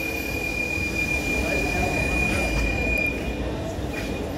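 Cairo Metro Line 1 train moving along the platform: a steady low rumble from the cars, with a single steady high-pitched whine that stops about three seconds in.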